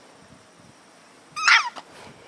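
A boxer puppy gives one short, high-pitched yelp with a wavering pitch about one and a half seconds in.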